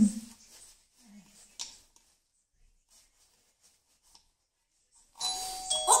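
Wireless doorbell chime, set off by a small child pressing the wall-mounted push button, rings near the end: a two-note ding-dong, the second note lower.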